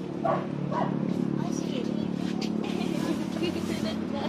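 Children's voices chattering as snacks are handed out, with a dog barking twice in quick succession near the start, over a steady low hum.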